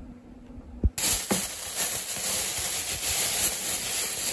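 Plastic bag rustling and crinkling close to the microphone, starting abruptly about a second in, loud and continuous, after a short knock.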